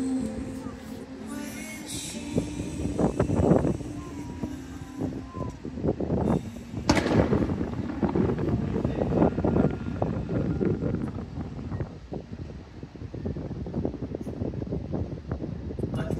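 Show music fading out, then fireworks going off in a long run of irregular booms and pops, one especially sharp about seven seconds in, with crowd voices underneath.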